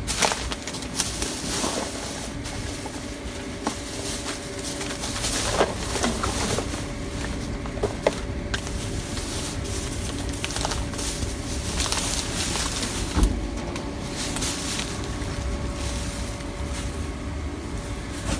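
Rustling, crinkling and scattered knocks as someone climbs into a dumpster full of clear plastic bags and handles them, with one heavier thump about two-thirds of the way through, over a steady faint hum.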